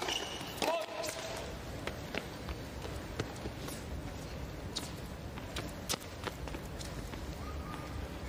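A tennis serve struck, then a short shouted fault call on the first serve. After that, a tennis ball bounces several times on the hard court over a low crowd murmur.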